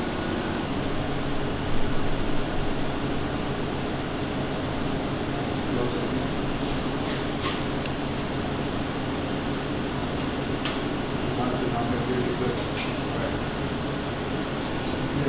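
Steady mechanical hum and rushing air noise from the laser-surgery equipment and room ventilation, with a thin constant high whine above it and a few faint ticks.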